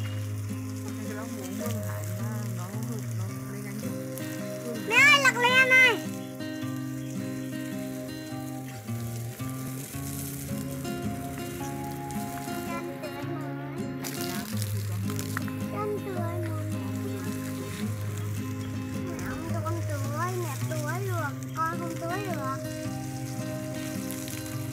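Garden hose spray hissing steadily as it waters leafy vegetable beds, under background music with sustained notes. A loud, wavering vocal cry rises over it briefly about five seconds in.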